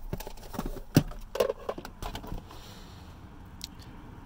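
Handling noises from rummaging behind a pickup's seat among cardboard boxes to pull out a plastic scan tool: scattered knocks, clicks and rustles, the sharpest knock about a second in, then quieter.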